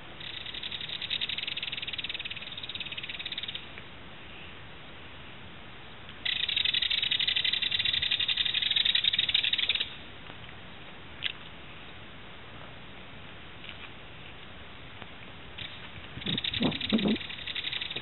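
Belted kingfisher giving its dry, rapid rattling call in three bursts of a few seconds each, the middle one the loudest and longest. A single short click falls in the quiet stretch between.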